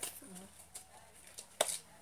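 Mostly quiet room, with a faint voice just after the start and a single sharp click about three-quarters of the way through.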